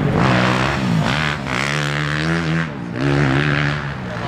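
Motocross bike engines revving on the track, the pitch falling and rising with the throttle. Near three seconds the engine note drops off briefly, then climbs again.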